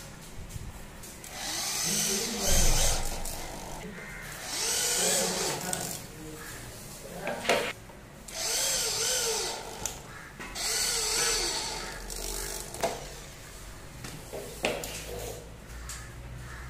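Corded electric hand drill boring into a PVC frame strip in four bursts of about one and a half to two seconds each. The motor's pitch rises and falls as the trigger is squeezed and let go, with a few sharp knocks in between.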